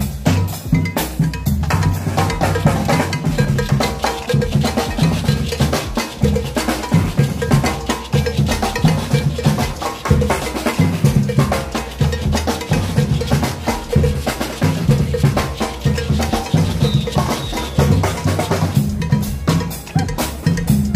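Marching street percussion band playing a steady, driving groove on large bass drums and snare drums.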